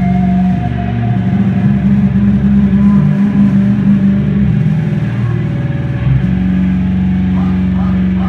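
Loud amplified electric guitar and bass holding low droning notes with no drums, the sustained tones shifting pitch a few times.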